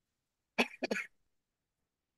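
A woman coughing three times in quick succession into a tissue, about half a second in.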